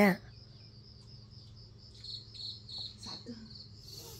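An insect chirping in a steady, even run of short high-pitched pulses over a low steady hum, with a brief spoken 'à' at the very start.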